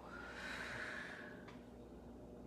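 A woman's long, audible exhale, the out-breath of a cat-cow stretch, ending abruptly about a second and a half in.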